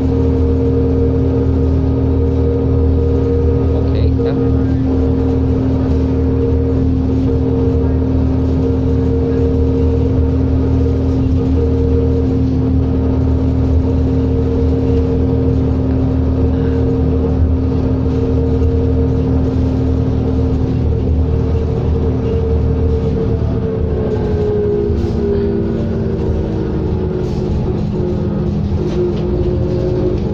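Interior drone of a 2003 New Flyer D40LF diesel bus under way: a steady engine and drivetrain hum with several held tones, which slide down in pitch about three-quarters of the way through.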